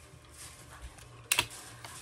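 Faint handling noise and one sharp plastic click a little over a second in, as a plastic water bottle is handled and put away from the camera.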